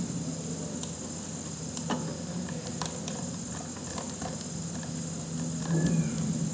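Steady low hum and hiss of room noise, with a few faint scattered clicks.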